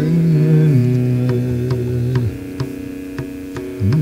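Carnatic male vocal in raga Gambhiranata, holding long notes that step down in pitch over a steady tanpura drone. About two seconds in the voice stops, leaving the drone and light, evenly spaced taps, and the singing comes back with quick ornamented turns near the end.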